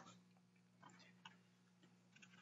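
Near silence: room tone with a faint low hum and a couple of faint ticks.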